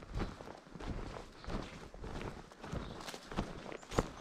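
Footsteps of a person walking at an ordinary pace, about two steps a second.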